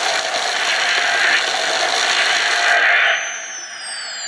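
Matty Collector Neutrino Wand prop toy playing its particle-stream firing sound effect at half power: a loud, steady hiss that swells about once a second. The hiss cuts off about three seconds in and gives way to several falling electronic whistle tones as the firing shuts down.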